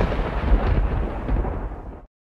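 Deep, rumbling thunder-style boom sound effect, heaviest in the bass, fading gradually and cutting off suddenly at the end.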